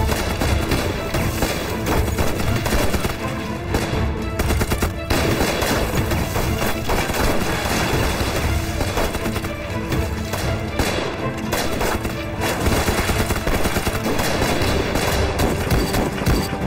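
Rifle gunfire in rapid, overlapping shots with no break, a sustained firefight.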